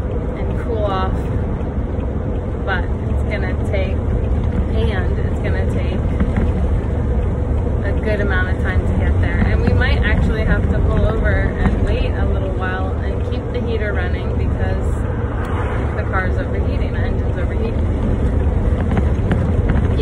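A motorhome's engine and road noise drone steadily inside the cab while it is driven slowly, with a woman talking over it.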